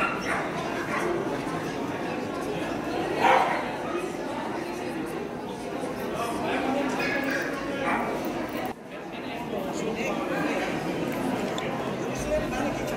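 A dog barking a few times, the loudest bark about three seconds in, over the murmur of people talking in a large hall.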